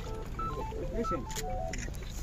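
A quick run of short electronic beeps at changing pitches, like a little phone-tone tune, with faint voices underneath.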